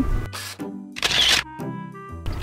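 Background music with two short camera-shutter sound effects, the first about a quarter second in and a longer, brighter one about a second in.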